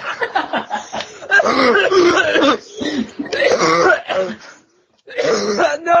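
People laughing hard and coughing, heard over a group webcam call. There is a short break a little before the end.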